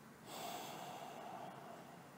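A single audible breath close to the microphone, starting about a quarter second in and fading away over a second and a half.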